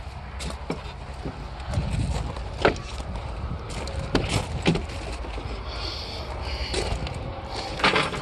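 A few sharp clicks and knocks from a car's outside door handle and latch as a rear door of a junked Cadillac hearse is worked open, over a low steady rumble.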